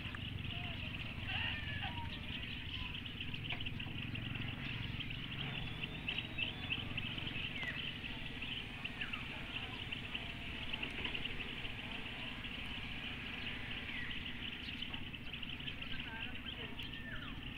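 Outdoor ambience: scattered short bird chirps over a steady high-pitched chirring and a low rumble.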